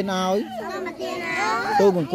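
Children's voices, drawn out on long, steady held pitches.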